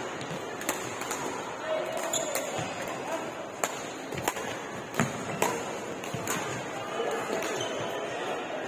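Badminton rackets striking a shuttlecock during a doubles rally: a string of sharp, irregular hits roughly once a second, the loudest two close together about five seconds in, over background voices.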